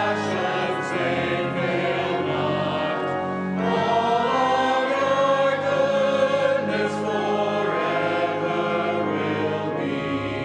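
A church choir and congregation singing a hymn, with many voices on sustained notes.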